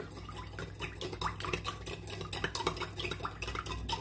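Metal spoon stirring milk in a glass bowl, with light, quick scrapes and clinks against the glass as the sugar dissolves.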